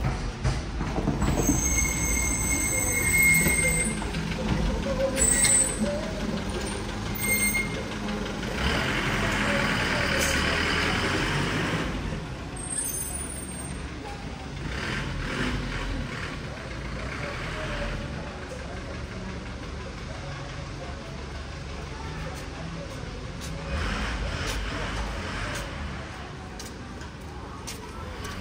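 City street traffic: a steady rumble of vehicles on the road beside a pavement, with a loud few-second rush of noise from a passing vehicle about nine seconds in, and passers-by talking.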